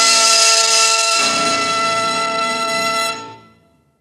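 Orchestral music with brass, ending on a held chord that stops a little after three seconds and quickly dies away.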